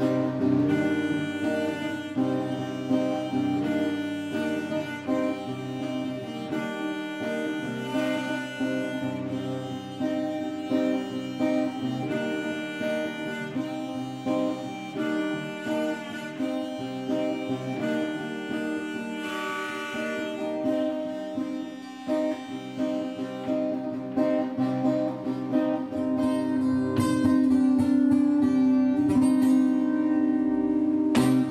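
Instrumental music led by acoustic guitar, with long held notes throughout. It grows louder over the last few seconds.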